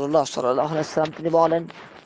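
A man's voice speaking throughout.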